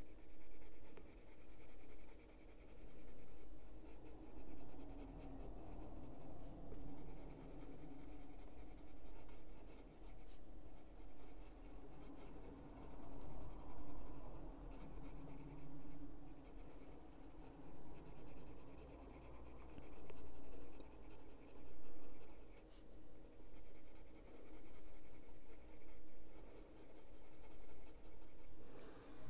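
Caran d'Ache Luminance coloured pencil rubbing on paper in short shading strokes, a soft scratchy sound that swells and fades about once a second as the pencil goes back and forth.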